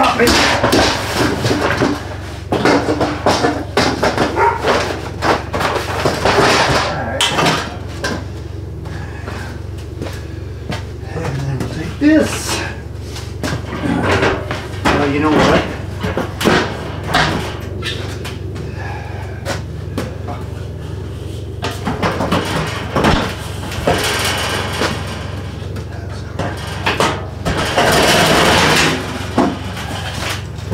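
Irregular knocks, scrapes and clanks of metal barbecue smokers and gear being shifted around by hand, over a steady low hum.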